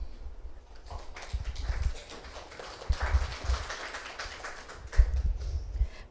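Handheld microphone handling noise: irregular dull thumps and bumps, the loudest about three seconds in and about five seconds in, over a faint murmur of the room.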